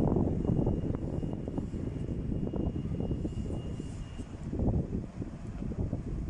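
City road traffic: cars passing close by, heard as an uneven low rumble of engines and tyres.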